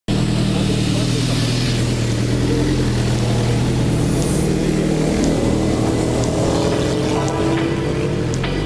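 Motorcycle engine running steadily, its pitch rising in the last couple of seconds as it is revved up.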